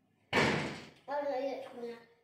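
A single loud bang about a third of a second in, dying away over about half a second, then a short voice near the end.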